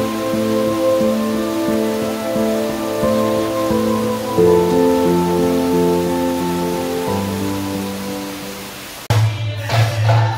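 Heavy rain pouring under slow, melodic background music. About nine seconds in, the sound cuts suddenly to loud folk drumming with jingling percussion.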